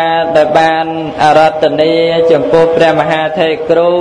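A Buddhist monk's voice chanting into a microphone, holding long notes and gliding slowly between pitches in an intoned recitation.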